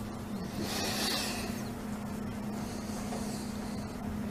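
A pause in a lecture room: a steady low hum, with a brief swell of hiss about a second in.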